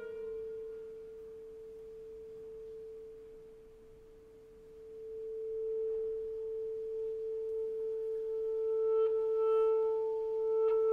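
Solo clarinet holding one long note. It fades almost to nothing about four seconds in, then swells again, its tone growing fuller and brighter toward the end.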